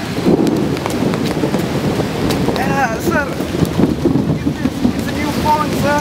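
Steady outdoor noise of wind buffeting the camera microphone, with distant voices calling out a few times about halfway through and again near the end.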